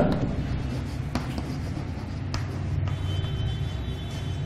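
Chalk writing on a blackboard: faint scratching with a couple of light taps, over a steady low room hum.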